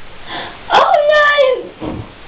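A high-pitched voice mimicking a small child, giving one wordless whine of about a second that falls in pitch.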